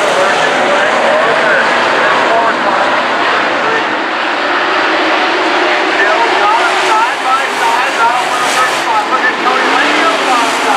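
A pack of dirt-track modified race cars running laps, their V8 engines rising and falling in pitch as they go through the turns.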